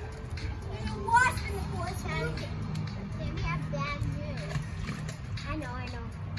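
Young children's voices and cries in a backyard pool, the loudest a sharp high squeal about a second in, with light water splashing and a steady low hum underneath.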